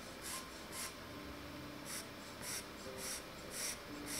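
Pastel pencil scratching on paper in short, quick strokes, about two a second, with a pause of about a second early in the run.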